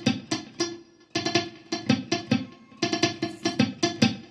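Stratocaster-style electric guitar picked in a quick run of short, muted notes, each a percussive pluck that dies away fast, with a brief pause about a second in.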